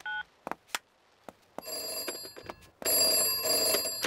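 Cartoon telephone sounds: a last push-button dialing beep, then a telephone bell ringing, softer from about a second and a half in and loud from near three seconds in.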